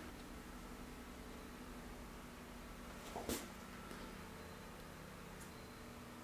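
Quiet room tone in a small room with a faint, steady low hum, and one small click or tap about three seconds in.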